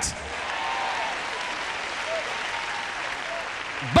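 A large congregation applauding steadily, with a few faint voices calling out among the clapping.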